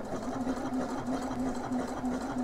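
Elna eXperience 450 computerized sewing machine running at a steady speed with an even hum, stitching the first side of a buttonhole.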